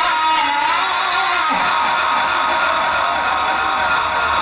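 A man's voice chanting Quran recitation in the melodic Egyptian style through a loudspeaker system, a long held note followed by slow gliding phrases.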